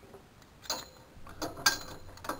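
Safety Cat electric capstan winch turning as it hauls in the rope, giving a few quiet, irregular mechanical clicks about half a second to a second apart.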